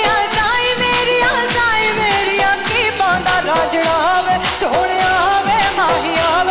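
A female singer performs a Hindi song in a Punjabi style, her voice bending and ornamenting each line, over a loud band accompaniment with a steady drum beat.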